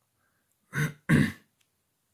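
A man clearing his throat: two short voiced bursts close together, about a second in.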